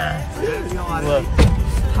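Low rumble of a car on the move, heard inside the cabin, under voices and music, with one sharp smack about one and a half seconds in.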